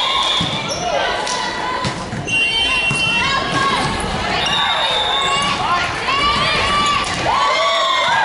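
Indoor volleyball rally on a wooden court: sneakers squeaking repeatedly as players move, mostly in the second half, with the sharp knocks of the ball being played.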